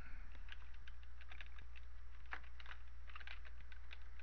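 Computer keyboard being typed on in quick, irregular keystrokes, over a steady low electrical hum.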